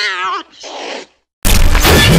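A wavering, cat-like yowl that breaks off about half a second in, followed by a short hissing breath. After a brief silence, a loud explosion-like burst of noise starts near the end.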